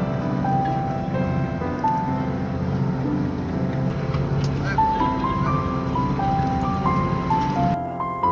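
Slow piano music, a simple melody of single held notes, laid over background noise with indistinct voices; the background noise cuts off just before the end.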